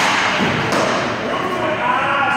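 Ice hockey shot: a sharp crack of the stick hitting the puck right at the start, then a second, fainter knock about three-quarters of a second later, with voices echoing in the rink.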